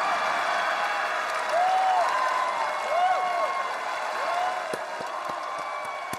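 Studio audience applauding and cheering as a song ends, with several drawn-out calls rising and falling over the clapping.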